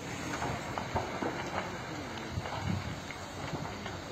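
Steady outdoor rumble and hiss with scattered faint knocks, on the sound of a phone filming a large building fire from across a road.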